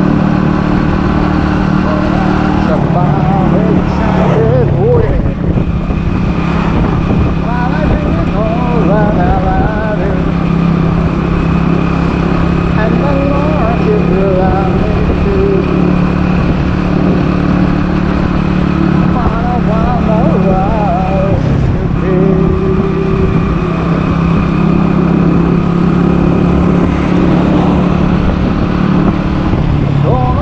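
Small motorcycle engine running steadily at cruising speed, heard from the rider's seat with wind and road noise. The engine's pitch holds nearly level, with a few small shifts.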